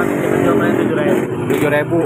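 People talking over steady background noise, with no other distinct sound.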